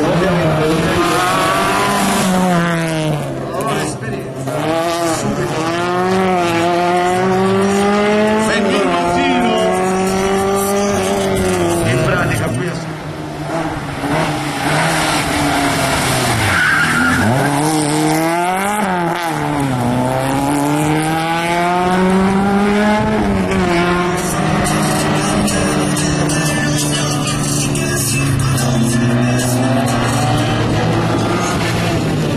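Autobianchi A112 race car's small four-cylinder engine revving hard, its pitch repeatedly climbing and then dropping as the driver accelerates, lifts off and shifts gear around a tight cone course. A brief tyre squeal comes about halfway through.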